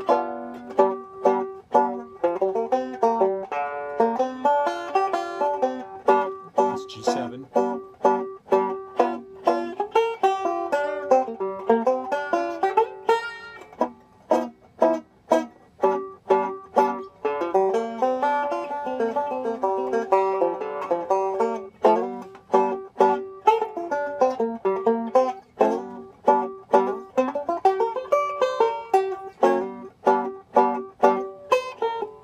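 Resonator banjo fingerpicked in a steady stream of notes: blues improvisation over a G7 chord, using B-flat major pentatonic shapes.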